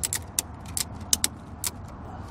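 Ratchet of an Erickson Winder ratchet tie-down strap being worked to tighten the strap: about seven sharp, unevenly spaced clicks as the handle is pumped.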